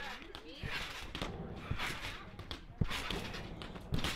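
Trampoline bouncing: the mat gives a dull thump about every half second as someone lands on it and springs back up, with faint voices in the background.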